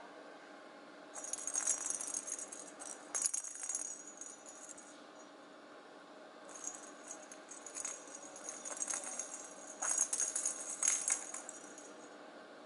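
Perforated plastic cat toy ball with a bell inside jingling and rattling as a kitten bats it and it rolls across concrete, in two spells of jingles with small knocks.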